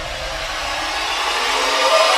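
A cinematic riser sound effect: a noise swell that grows steadily louder, its low rumble dropping away near the end as it builds toward a hit.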